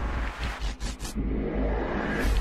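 Logo-animation sound effects: whooshing sweeps over a deep, steady bass rumble, with a couple of sharp swishes about half a second to a second in.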